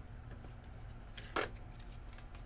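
A short scrape of a trading card being handled against plastic, about a second and a half in, over a low steady room hum.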